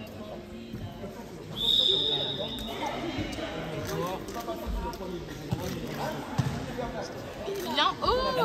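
Sports-hall ambience at halftime: scattered voices talking and a basketball bouncing a few times on the court floor. A single high steady tone cuts in about one and a half seconds in and fades over the next two seconds.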